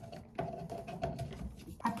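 A run of light clicks from handling an electric hot comb and setting its temperature to 290 degrees.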